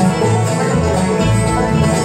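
Live bluegrass band playing: banjo, acoustic guitars and fiddle over an upright bass keeping a steady beat.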